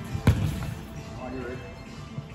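A football kicked on a wooden sports-hall floor: one sharp thud about a quarter second in, echoing briefly in the large hall, with faint voices of players after it.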